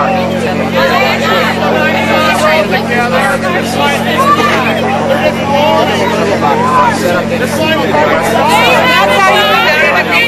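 A close crowd of people talking over one another, many voices at once, with a steady low hum underneath.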